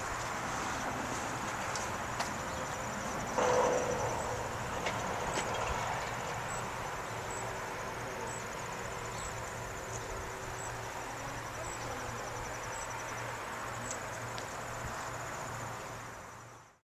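Outdoor background noise on a parking lot: a steady hiss with a low hum and a faint high chirp repeating about once a second, and a brief louder sound about three and a half seconds in.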